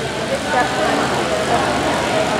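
Indistinct voices over a steady background rumble of noise.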